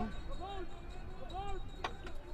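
Open-air football pitch ambience: a few faint, short shouts from players on the field and one sharp knock near the end.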